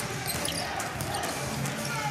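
A basketball dribbled on the hardwood court during live play, over the steady noise of an indoor arena crowd.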